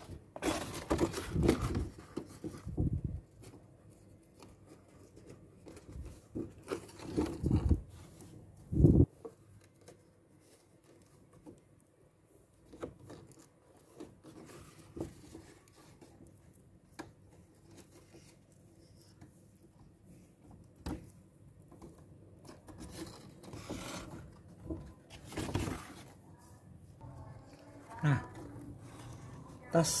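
Stiff calendar paper rustling and crinkling in bursts as a paper bag is handled and its cord handles are threaded through the punched holes, with quieter pauses between and a louder sharp knock about nine seconds in.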